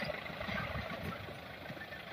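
A jeep's engine running as it drives away, the sound slowly fading.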